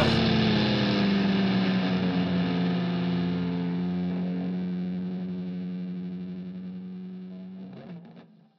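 Distorted electric guitars ringing out on a held final chord, fading slowly over several seconds, then stopped near the end.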